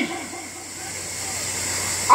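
A long breath drawn in close to a handheld microphone and carried through the sound system, a hiss that grows steadily louder for about a second and a half and stops as the next words begin. A steady electronic hiss and hum from the amplification underlie it.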